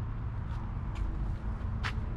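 Low steady rumble of outdoor background and camera handling noise as the camera is moved back, with a single sharp click near the end.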